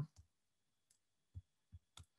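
Near silence: room tone over a webinar audio feed, with a faint click and two soft low thumps in the second half.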